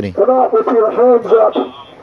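A man preaching loudly through a megaphone, his voice tinny and raised, trailing off about a second and a half in.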